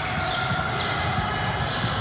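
Basketball game play on a hardwood gym court: players' sneakers squeaking and feet moving while the ball is in play, echoing in a large gym.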